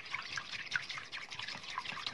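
Wooden spoon beating raw egg in a white ceramic bowl: quick, irregular wet slaps and small clicks of the spoon against the bowl.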